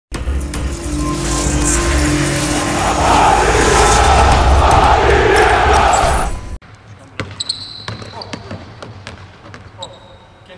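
Music over loud crowd cheering that cuts off suddenly after about six and a half seconds. Then basketballs bounce on a hardwood court, with a few short sneaker squeaks.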